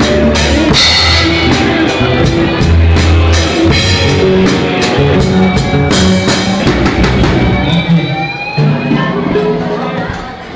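Live rock band playing, drum kit with cymbal crashes and electric guitar over a steady low line. The drum and cymbal strikes stop about three-quarters of the way through and the music thins out, as the song winds down.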